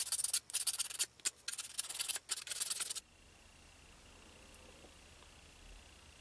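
Small piece of sandpaper rubbed in quick, scratchy strokes against the end of a small white stick, roughing up its edges. The rubbing stops about three seconds in.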